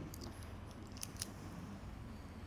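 Quiet room tone with a few faint ticks about a second in.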